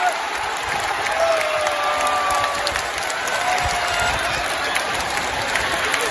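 Large stadium crowd of football supporters cheering and clapping, with a few long held calls standing out above the steady crowd noise.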